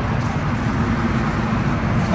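Steady low background rumble, with no distinct sound standing out.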